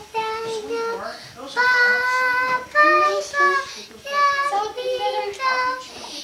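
A young girl singing unaccompanied, a song of held notes separated by short breaths.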